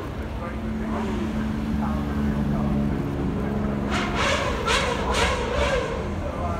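Supercar engines running steadily as the cars drive past slowly on the hill climb, with people talking. A quick run of four short, sharp noisy bursts comes near the end.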